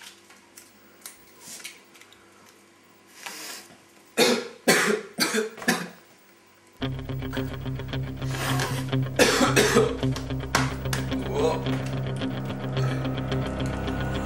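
A few faint clicks, then several loud short coughs about four to six seconds in. About seven seconds in, music with a heavy, steady bass line starts and carries on.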